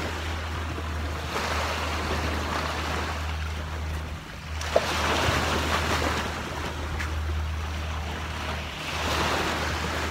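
Sea surf washing onto a sandy beach, rising and falling in a few swells, with a steady low rumble underneath.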